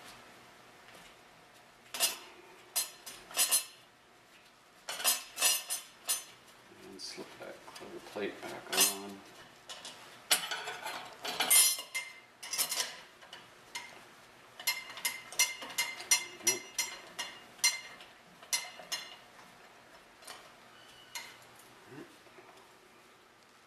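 Small metal bolts and parts clinking and clicking against the aluminium pump plate and lower-unit housing of an outboard motor as they are handled and pulled out. It is a string of sharp metallic clicks in clusters, some ringing briefly.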